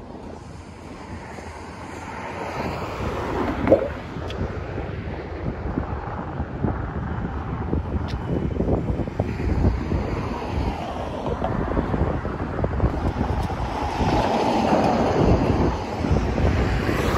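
Wind buffeting the microphone, growing steadily louder, with the low rumble of road traffic beneath it.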